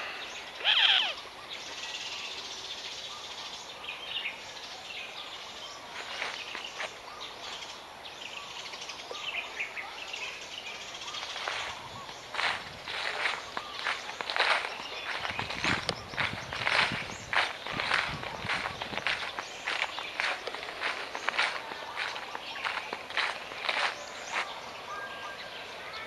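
Footsteps crunching through thick dry leaf litter, about two steps a second, through the second half; before that, open-air ambience with a few bird chirps, one about a second in.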